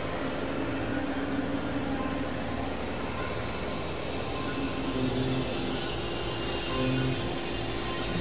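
Experimental synthesizer noise drone: a steady, dense wash of noise like a jet or train rumble, with held low tones that come and go.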